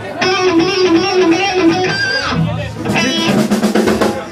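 Electric guitar played through a Marshall amplifier stack: a short run of single notes, then a held, fuller sound from about three seconds in.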